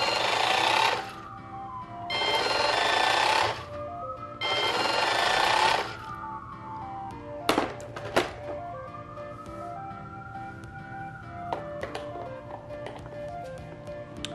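Eufy RoboVac 11+ robot vacuum running upside down: three short loud bursts of motor noise, each with a whine that rises and then falls away, then two sharp clicks and a longer whine that climbs and dies down near the end. The brush drive spindle is spinning freely again after the stuck-brush repair. Soft background music plays throughout.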